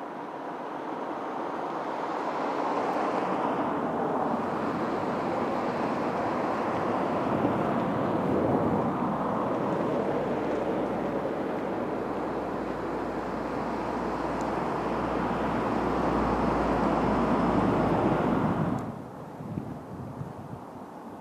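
Steady rumbling noise of a train running past on the tracks, with wind on the microphone, growing slightly louder and deeper in the second half and cutting off suddenly near the end.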